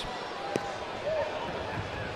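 Stadium crowd ambience, a steady murmur of spectators with faint distant voices, broken by a single sharp knock about half a second in.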